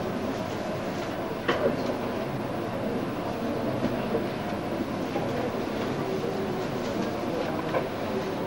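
Steady room noise picked up by a desk microphone, with a few light clicks and rustles from papers and a pen being handled at the table; the sharpest click comes about a second and a half in.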